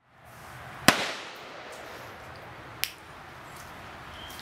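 Two gunshots at a shooting range, about two seconds apart. The first is louder and followed by a short echo. Both sit over steady background noise.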